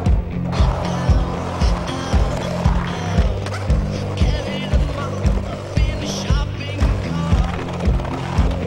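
Soundtrack music with a steady beat of about two kicks a second over a low, sustained bass line, with wavering pitched lines above.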